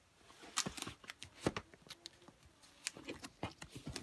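Plastic DVD cases being handled and shifted on a wooden shelf: light, irregular clicks and knocks, a dozen or so scattered over a few seconds.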